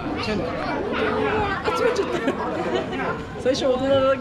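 People talking, several voices chattering and overlapping.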